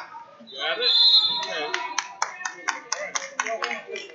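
Rapid hand clapping, about six or seven claps a second, starting about a second and a half in, over voices calling out.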